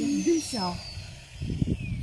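Electric drill motor spinning down after boring a sap tap hole in a birch trunk: a faint high whine falling steadily in pitch. Short voice sounds come early on, and a few soft low knocks come about halfway through.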